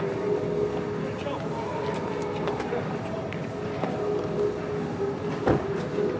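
A steady machine hum with a held tone and scattered small clicks, and one sharp knock about five and a half seconds in.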